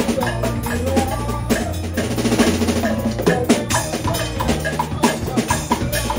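Live jazz quartet playing an instrumental passage: drum kit keeping a steady beat under piano chords and a low walking line on a fretless Kala U-Bass, its notes changing about once a second.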